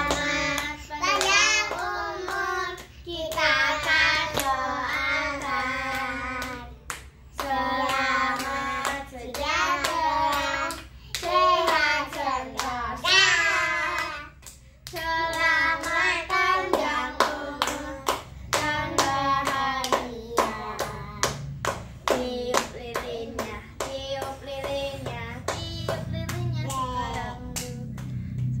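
Children singing an Indonesian birthday song together while clapping their hands in time, the claps most dense in the second half.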